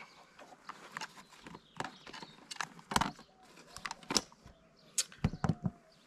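Scattered light clicks and knocks from a ham radio, its coiled hand-mic cable and its radio pouch being handled, irregular, with a quick cluster of knocks near the end.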